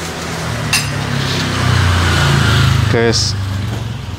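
A motor vehicle's engine passing close by, its low rumble swelling to a peak and then fading. A single sharp clink of dishes comes about a second in.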